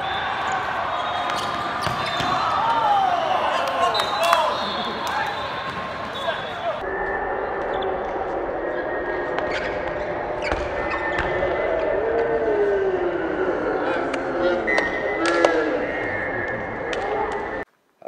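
Sound of an indoor volleyball match in a large hall: players shouting and calling, with several sharp hits of the ball and scuffs on the court floor through the steady crowd hum.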